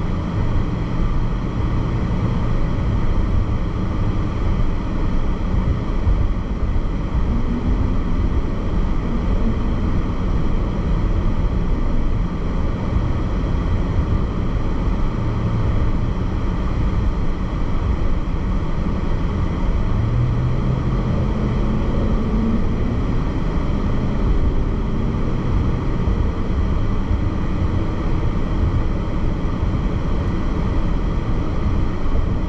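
Steady road and engine noise inside a moving car's cabin: a low rumble of tyres and engine, with the engine note rising briefly about twenty seconds in.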